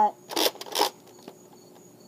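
Two short plastic sliding strokes about half a second apart: the bolt of a Nerf Fortnite BASR-L bolt-action blaster being pulled back and pushed forward to prime it between shots.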